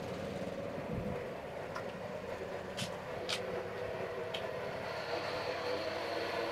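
Steady low background ambience with a few faint clicks near the middle and a thin high whine in the second half.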